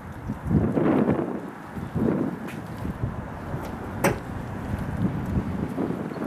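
Wind buffeting the microphone outdoors: a noisy rush that swells twice in the first couple of seconds, with a single sharp click about four seconds in.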